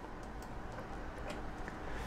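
Low room tone with a few faint, irregularly spaced clicks.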